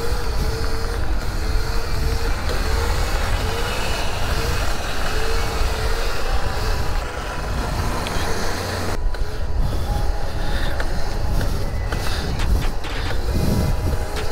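Wind rumble on the microphone and traffic noise while riding through city streets, steady throughout. A short tone repeats about every 0.7 s over the first six seconds.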